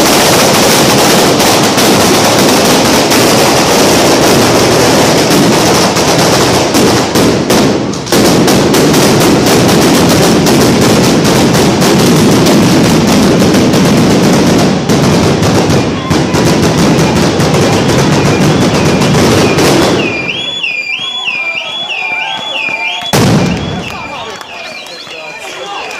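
A long chain of firecrackers going off in a dense, continuous crackle of bangs, very loud, for about twenty seconds. It then stops abruptly, leaving a fast warbling high tone and one more sharp bang near the end.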